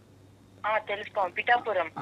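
A person speaking over a telephone line, the voice thin and cut off above the phone band, starting about half a second in after a brief lull.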